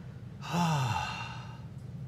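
A man sighs once, about half a second in: his voice falls in pitch and trails off into breath, over a steady low hum.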